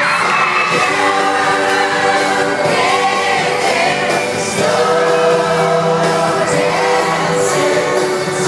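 Pop vocal group singing live with a backing band, heard from the audience in a theatre.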